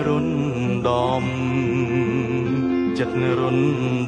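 A man singing a Khmer song with vibrato over acoustic guitar accompaniment. Guitar chords are struck about a second in and again near the end, then left to ring.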